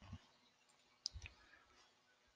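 Faint computer mouse clicks, two close together about a second in, over near-silent room tone.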